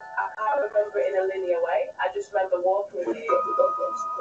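A voice with music. About three seconds in, a steady held note enters and holds under the voice.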